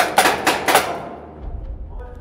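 A quick volley of about four paintball marker shots, sharp pops in under a second in a concrete stairwell, with background music underneath.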